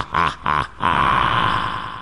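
A man's laugh in rapid 'ha' pulses, about four a second, each rising and falling in pitch, stopping about a second in. It ends in one long drawn-out held note that fades away near the end.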